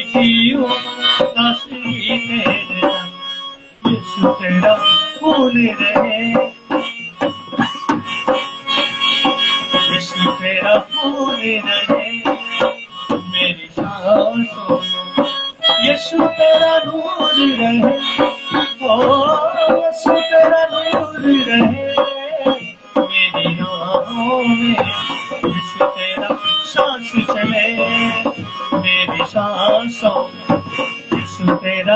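A live devotional song: a man singing while playing a harmonium, its reeds holding steady chords, accompanied by a hand-played dholak drum.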